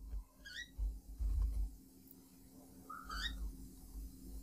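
Two short, high, bird-like chirps about two and a half seconds apart, over a low rumble and a few faint computer-keyboard keystrokes.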